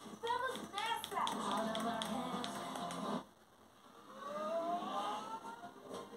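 TV speaker playing a DVD's soundtrack. Singing with music cuts off abruptly about three seconds in, and after a short dip, menu music with rising tones builds up.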